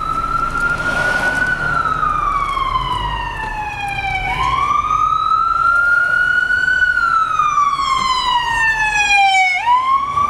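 Emergency vehicle siren sounding a slow wail, its pitch rising and falling in two long sweeps with a quick rise near the end. It grows louder as the vehicle closes in and passes alongside the car.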